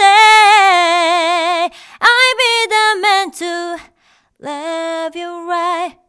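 A woman singing a love song unaccompanied, holding the word "stay" with vibrato for about a second and a half, then singing quick ornamented runs, with a short break about four seconds in before the next held notes.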